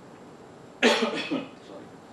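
A man coughing: a sudden short run of two or three coughs starting a little under a second in.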